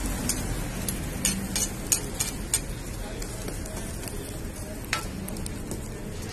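Paratha frying in oil on a flat griddle, sizzling steadily, with sharp clicks of a metal ladle and skewer striking the griddle: several in the first two and a half seconds and one more about five seconds in.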